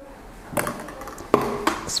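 Tall drinking glasses set down on a countertop: two knocks about a second apart, the second one ringing briefly.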